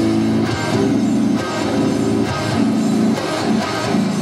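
Electric guitar played in high-gain riffs: a Jackson Juggernaut HT6 driven through a Horizon Devices Precision Drive overdrive and an MXR 5150 pedal into a Mesa combo amp's clean channel, with delay and reverb. Held chords change about every half second to a second, with picked notes between them.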